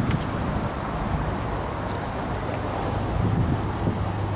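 Mazda Verisa's 1.5-litre four-cylinder engine idling steadily just after start-up, running normally, a low even hum under a constant high-pitched hiss.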